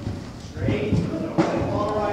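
Indistinct talk over the muffled hoofbeats of a horse cantering on arena dirt, with one sharp click about one and a half seconds in.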